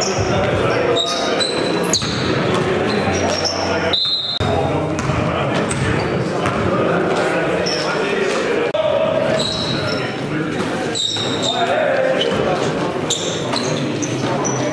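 Basketball game sound in a large gym hall: a basketball bouncing on the wooden court among players' voices.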